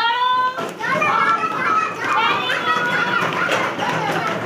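A class of young children's voices calling out and talking over one another, many high voices overlapping.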